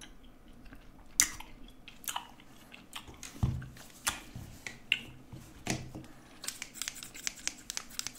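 Close-miked chewing and biting mouth sounds, with a few louder bites. About six seconds in they give way to rapid snipping of scissors held close to the microphone.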